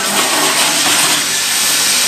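Steady rushing hiss from the filling station of a small RO drinking-water bottling plant, with water and equipment running continuously.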